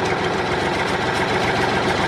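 Tractor engine sound effect, running steadily as the tractor drives off.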